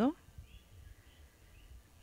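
The end of a spoken word, then near silence with three faint short high chirps, like distant bird calls.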